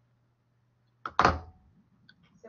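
A single short thump about a second in, sharp at the start and fading within half a second, over a faint steady low hum.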